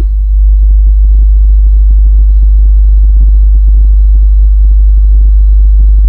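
A loud, steady low-pitched hum that does not change. It is far louder than anything else, and only faint short ticks show beneath it.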